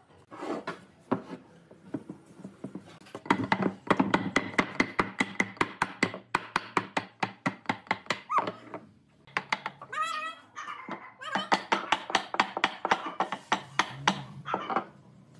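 Wooden mallet striking a pine table leg, driving a glued joint onto the rail: rapid sharp knocks, about four or five a second, in two runs with a pause between.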